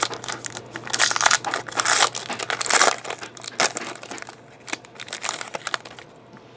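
A plastic trading-card pack wrapper being torn open by hand, crinkling and crackling in bursts. It is loudest in the first three seconds, then fades to lighter rustling.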